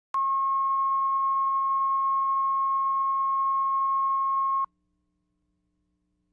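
A steady 1 kHz line-up tone accompanying colour bars, the reference tone used to set audio levels at the head of a videotape. It holds at one pitch and level, then cuts off suddenly about four and a half seconds in.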